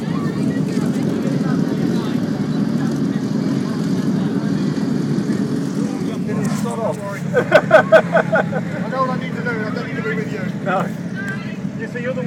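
Car engine idling steadily, heard from inside the car, with people's voices around it. About seven seconds in a person's voice breaks in with a quick run of loud, evenly spaced syllables, the loudest moment.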